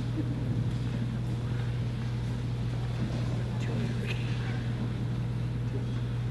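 Steady low hum filling a large gymnasium between readings, with a few faint taps and rustles over it.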